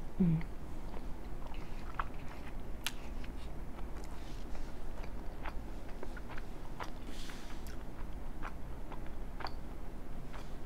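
Close-miked chewing of a mouthful of soft chicken and cheese enchilada, with many small, irregular wet mouth clicks. It opens with a brief hummed "mm".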